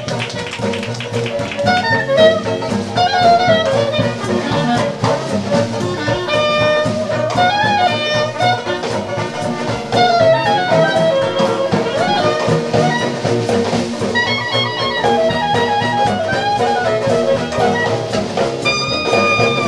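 Traditional jazz band playing an up-tempo number: horn melody lines from trombone, trumpet and clarinet over piano, string bass, banjo and drums, continuing without a break.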